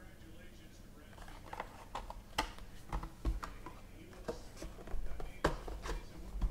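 Hands handling a trading card in a hard plastic holder and its cardboard box: scattered light clicks and taps, the loudest near the end as the card is lifted out.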